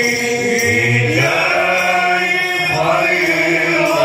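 Men's voices chanting a devotional maulid ode in long, held melodic lines that slide slowly between pitches.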